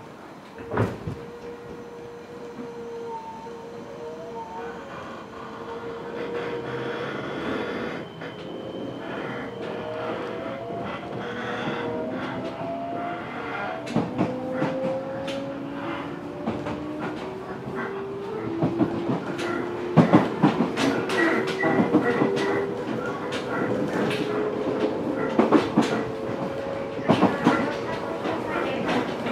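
Fukuoka City Subway 1000N series electric train heard from inside the car, pulling away from a stop. A thump comes about a second in; the traction motors' whine then climbs in pitch in several overlapping steps as the train gathers speed, and wheel clatter over rail joints comes faster and louder from about halfway.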